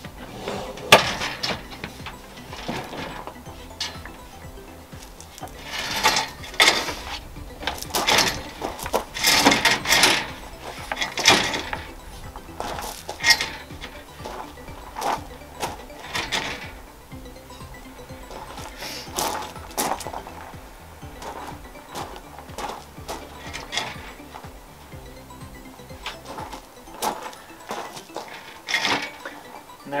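Background music, over intermittent sharp clicks, knocks and rattles from a Lifetime folding camp table being handled and set up: its steel legs folding out and locking and its plastic top and metal grill rack shifting.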